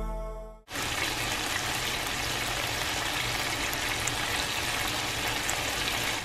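Pork chops frying in oil in a pan, a steady sizzle that starts about a second in, just after a music track fades out.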